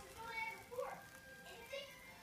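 Faint, low voices murmuring briefly; otherwise quiet.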